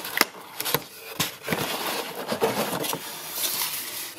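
Cardboard packaging being handled: a few sharp taps and clicks, then a continuous scraping rustle as the light bar and its cardboard insert are moved in the box.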